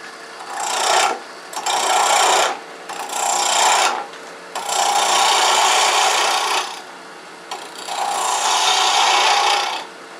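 Small bowl gouge cutting a wooden block that spins off-axis on a lathe at high speed. The cut comes in five passes of one to two seconds each, with the lathe's steady running heard between them. Because the block is mounted off its axis, the tool is cutting a lot of air.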